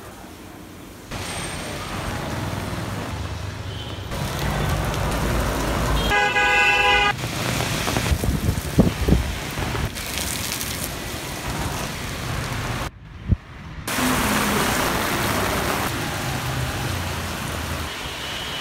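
Street traffic and rain noise in a string of short clips that cut off abruptly one after another. A vehicle horn sounds once for about a second some six seconds in.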